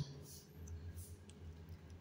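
A few faint clicks from a fingertip tapping a smartphone's touchscreen, over a low steady hum.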